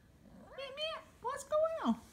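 Young orange kitten meowing twice, the second meow longer and dropping in pitch at the end.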